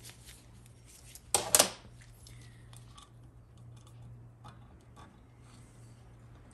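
Small metal transmission valve-body parts being handled on a workbench: two sharp clicks about a second and a half in, then scattered light clicks, over a steady low hum.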